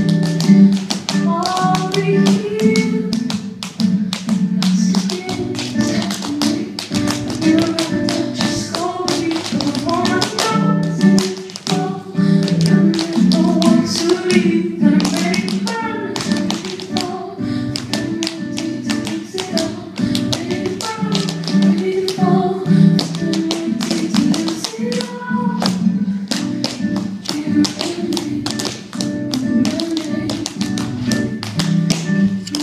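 Tap dancing: shoes striking the stage floor in fast, dense rhythmic patterns over accompanying music.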